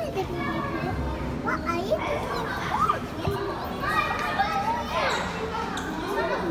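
Background chatter of children and other visitors, many voices overlapping, none of them close enough to make out words.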